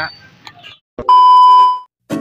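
A single loud electronic beep: a steady tone that starts about a second in just after a click, lasts under a second and cuts off abruptly.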